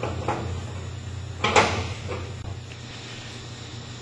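A few sharp metallic clicks and knocks from a wrench working the nut on a belt-tensioning rod of a shot blast machine's bucket elevator, the loudest about one and a half seconds in, over a steady low hum.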